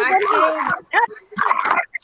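Speech: a person talking over a video-call connection, in short phrases with brief pauses.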